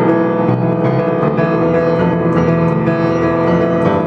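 Weber five-foot grand piano being played: notes and chords struck in quick succession, ringing on over one another.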